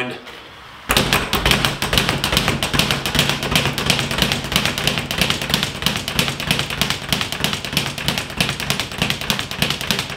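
Speed bag being punched continuously, starting about a second in: a fast, steady rattle of the leather bag striking and rebounding off its wall-mounted rebound board.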